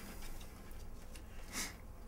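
Faint handling of a shrink-wrapped vinyl LP being turned over in the hands: a few soft rustles of plastic film against fingers, the clearest about one and a half seconds in.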